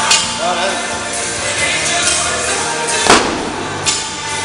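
Background music with singing, broken by three sharp clanks of weight plates being handled at the barbell rack: one at the start, the loudest about three seconds in, and a smaller one near the end.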